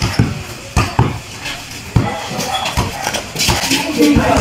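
A basketball bouncing and sneakers on a concrete court: a series of irregular dull thumps, with voices in the background.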